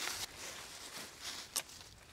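Quiet background hiss with a single light click about one and a half seconds in.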